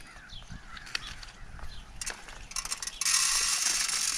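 Hand-cranked Cyclone bag seed broadcaster being worked. Faint handling and a few clicks of the mechanism come first, then from about three seconds in the crank turns with a steady whirring hiss of gears and seed being spread.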